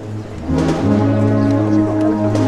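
Processional brass band playing long, held chords over a steady bass line, swelling louder about half a second in.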